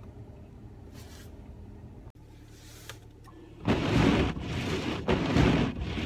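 Inside a car with a steady low hum of the idling engine, then, about two-thirds of the way through, the windshield wipers start and scrape loudly over a windshield coated in ice, in rough, uneven bursts as the blades chatter across the frozen surface.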